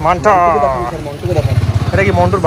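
A motorcycle engine idling nearby, a low, fast-pulsing rumble that grows stronger about halfway through, under a person's voice.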